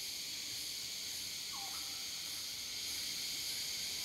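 Steady rainforest insect chorus, an even high buzzing, with one faint short falling call about one and a half seconds in.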